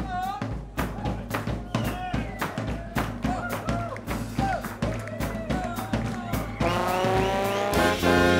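A New Orleans jazz band playing live: a drum-kit groove with bass and a gliding melodic line over it. About seven seconds in, the horn section comes in together and the music gets louder.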